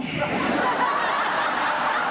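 Audience laughing, many voices mixed together at an even level.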